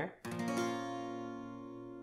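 Acoustic guitar with a capo on the first fret: a single strum of an A minor chord shape about a quarter second in, left to ring and slowly fade.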